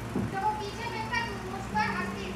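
Children's voices chattering, over a steady low hum.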